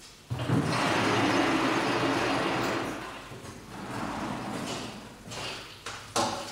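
Vertically sliding lecture-hall chalkboard panels being pushed up on their runners: a rumble that starts suddenly, holds steady for a few seconds, then fades to a weaker, uneven run as the boards come to rest.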